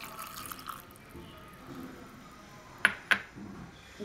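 Cold milk pouring into a steel mixer-grinder jar over chopped mango and sugar, a soft liquid splashing. About three seconds in, two sharp clicks a quarter-second apart as the jar is closed and fitted for grinding.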